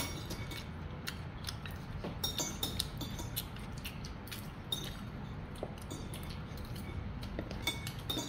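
Spoon and fork clinking and scraping on a plate, with scattered light clicks and taps of utensils while eating. A sharper clink comes right at the start.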